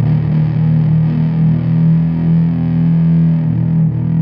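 Live rock band playing: a distorted electric guitar through effects holds a sustained low chord over the bass.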